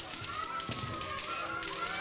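Rapid clacking of bamboo shinai striking during kendo sparring, a quick run of sharp taps, with a long high-pitched shout held over it.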